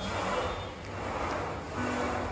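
Indistinct background noise of a busy gym, with background music starting to come in near the end.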